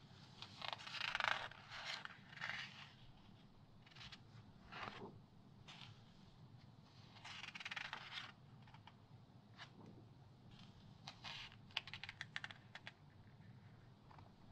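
Glossy magazine pages being turned by hand: soft papery swishes as a page sweeps over, one about a second in and another around seven seconds, followed by a cluster of light quick ticks of paper and fingertips near the end.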